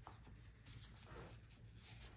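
Faint rustling of paper sticker sheets being handled and leafed through, a few soft scratchy rustles over near-silent room tone.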